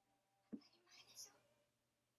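Near silence, with one short, very faint phrase of speech about half a second in.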